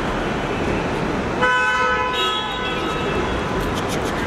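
A car horn honks once, a single steady honk of about a second and a half starting about a second and a half in, over steady road-traffic noise.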